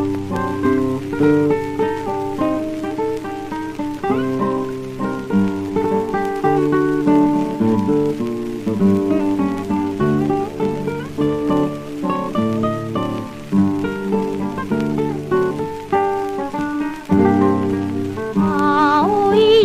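Instrumental guitar introduction from an old Columbia 78 rpm record: a plucked acoustic-guitar melody over bass notes, played at a steady pace.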